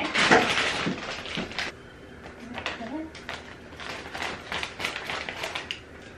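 Plastic bag of coconut-fibre reptile substrate crinkling and rustling as it is handled and cut open, with scattered small clicks and knocks.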